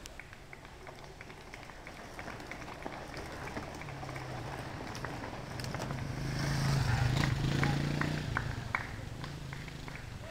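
Mountain bikes passing on a dirt and gravel singletrack: knobby tyres rolling, with short clicks from the bikes. The sound swells and is loudest about seven to eight seconds in as riders go by.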